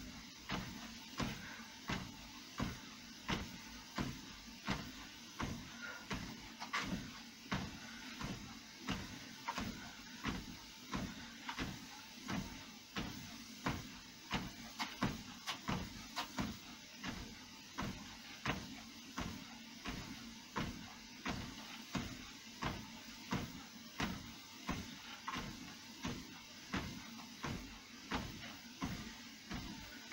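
Footfalls thudding on a Fitnord treadmill's belt in a steady, even rhythm, with the treadmill running underneath.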